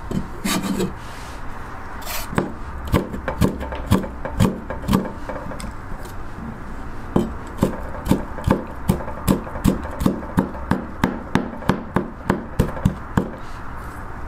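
Kitchen knife chopping vegetables on a wooden cutting board. Strokes come about two a second at first, then pause, then a faster run of about three a second.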